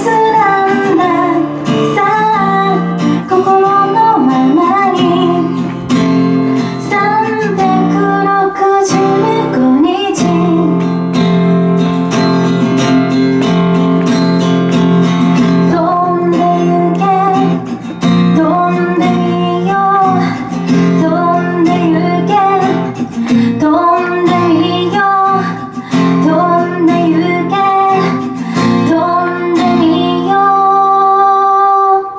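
A woman singing a slow pop melody while strumming an acoustic guitar.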